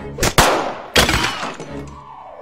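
Two loud gunshot bangs from a pistol, the first about a quarter-second in and the second about a second in, each ringing out briefly, over film score music.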